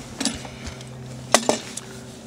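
Hand tools being picked up and set down on a wooden work table: a few light clicks and knocks, with one sharp click a little past the middle, over a steady low hum.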